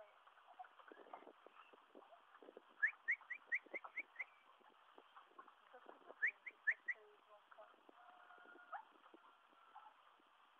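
A bird calling: two quick runs of short, rising, high chirps, about five a second, six notes and then four.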